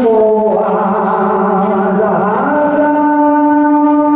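A man singing a Mường folk song into a microphone, amplified through a PA, in a slow, drawn-out style. About two and a half seconds in, his voice bends and then settles into one long held note.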